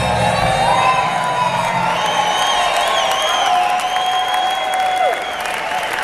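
A bluegrass band's last held note fades out about five seconds in. An audience cheers and whoops over it, and applause starts as the note ends.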